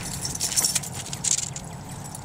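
A dog scrambling up a tree trunk: quick irregular scratches and clicks of claws on bark, in clusters.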